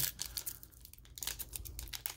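Plastic wrapper of a basketball trading-card pack crinkling and tearing as it is pulled open by hand: a run of small crackles, sparser in the middle and busier near the end.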